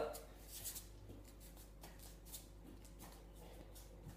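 Faint, scattered soft scuffs and pats of bare hands and feet on a tiled floor during a floor crawl exercise.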